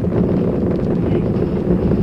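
Saturn V rocket's first-stage engines, five F-1s, during ascent: a loud, steady, low roar picked up by the broadcast microphone inside the building that the launch is shaking.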